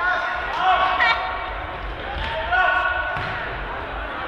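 Voices calling out during an indoor football game, echoing in a large sports hall, with a ball kicked and bouncing on the hall floor about a second in.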